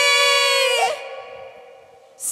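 A woman's singing voice holding one long note at the end of a phrase. The note stops just under a second in and leaves a faint fading tail.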